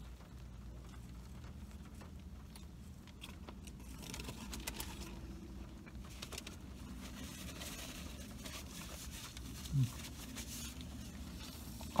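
A man chewing a mouthful of gyro on chewy flatbread, with faint crinkles and rustles of its paper wrapper, over a steady low hum. There is a short "mm" from him just before ten seconds in.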